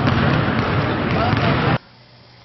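Basketball practice sound: balls bouncing on a hardwood gym floor amid players' voices. It cuts off suddenly near the end, leaving quiet room tone.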